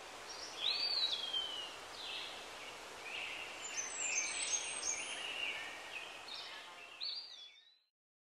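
Several birds calling and singing over a steady outdoor background hiss. The calls are short chirps and whistles, one with a long falling glide about a second in. The sound fades out near the end.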